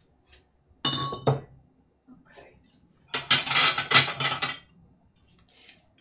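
Handmade Bolesławiec stoneware ladles and serving spoons clinking together: one ringing clink about a second in, then a longer clatter of several pieces knocking against each other about three seconds in as they are set down.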